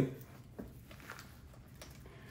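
A few faint, scattered crackles and rustles of dry potting soil and roots crumbling as fingers work loose a fiddle leaf fig's root-bound root ball.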